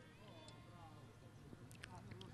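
Near silence: faint background sound from the football pitch during a pause in the commentary.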